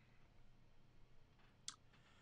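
Near silence (room tone), with one short, sharp click about a second and a half in.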